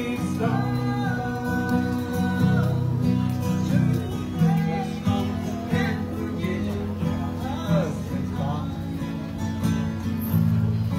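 Live country duet: a man and a woman singing together over two strummed acoustic guitars, with a long held note early in the line.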